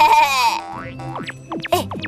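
Playful children's cartoon background music with cartoon sound effects: a short, loud, high-pitched cartoon sound at the start, then a few quick downward whistle-like glides about a second in.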